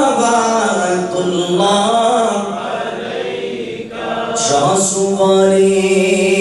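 A man's voice chanting a devotional salutation to the Prophet in a slow, gliding melody, pausing for breath about four seconds in and then holding one long steady note.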